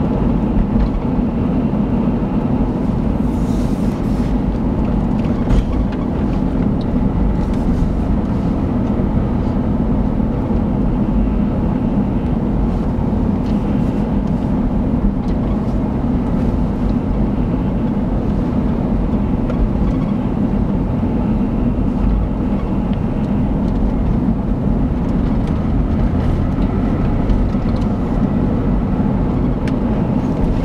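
Steady road and engine noise of a car driving at road speed, heard from inside the cabin, heaviest in the low range and unbroken throughout.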